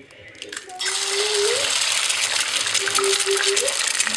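Egg-soaked bread sizzling and crackling on the hot nonstick plate of an electric sandwich maker. The sizzle starts suddenly about a second in, as the slice is laid down, and keeps going.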